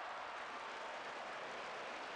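Faint, steady background hiss with no distinct event in it.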